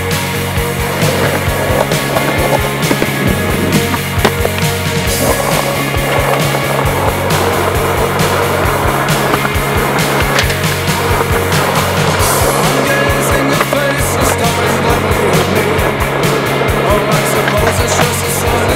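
Skateboard wheels rolling on asphalt, with sharp clacks of the board and trucks hitting the ground and a metal bench, under a rock song.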